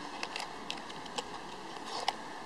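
Steady background noise with a few light, short clicks scattered through.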